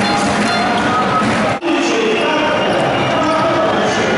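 Crowd din in a packed basketball arena, with voices and music mixed into it; the sound drops out for an instant about one and a half seconds in, then the same din carries on.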